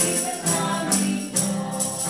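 Mixed choir singing a worship song in unison with acoustic guitar and keyboard accompaniment. A steady beat of sharp, bright percussive hits comes about twice a second.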